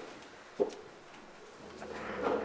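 Quiet room tone with one short thud about half a second in.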